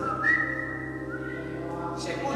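A steady high whistle from the church sound system, shifting to a slightly lower tone about a second in, over a faint sustained hum: typical of microphone feedback.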